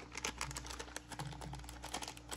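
Small clear plastic bag handled between the fingers, crinkling faintly with a run of light irregular clicks.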